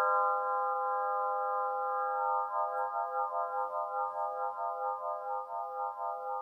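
Svaram 'Air' nine-bar swinging chime: its metal bars ring on together as a chord of several sustained tones, slowly fading. From about halfway in, the ringing takes on a steady pulsing wobble, about three pulses a second, as the swinging chime turns.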